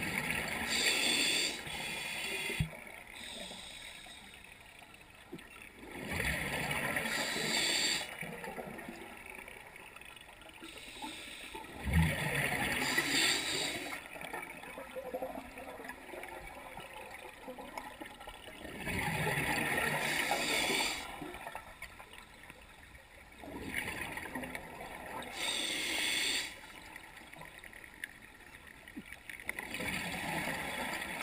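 Scuba diver breathing through a regulator underwater: five breaths, each a rush of hiss and bubbles lasting two to three seconds, about every six seconds.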